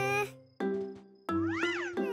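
High, cutesy cartoon baby voice: a short call at the start and a cooing call that rises and falls in pitch near the end, over sustained background music chords.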